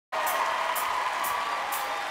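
Studio audience cheering over the opening of the music: a held synth chord with a crisp tick about twice a second.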